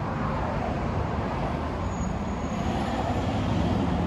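Steady outdoor background noise: a low rumble with hiss, even throughout.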